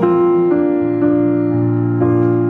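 A slow piano accompaniment under a woman's voice holding one long sung note.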